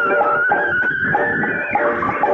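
Instrumental intro of a Hindi film song: a high gliding tone slides slowly down, then climbs back up near the end, over short repeated notes from the accompaniment.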